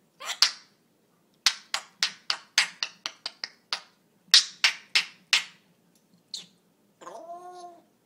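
African grey parrot making a quick run of sharp, hard clicks, about three or four a second, while its head is down in its food bowl. A short pitched call from the parrot follows near the end.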